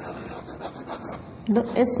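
Chalk scratching and rubbing on a blackboard as a word is written out. A woman's voice starts near the end.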